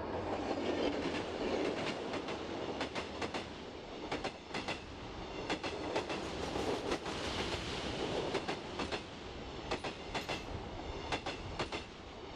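Steady rumbling noise with many sharp clicks and knocks at irregular intervals over it.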